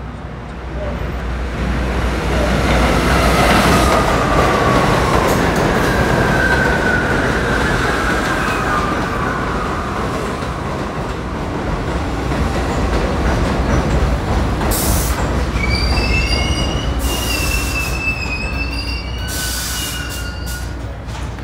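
New York City subway train pulling into a station: the rumble of its wheels on the rails builds over the first few seconds, with a falling whine as it slows. High brake and wheel squeals come near the end as it comes to a stop.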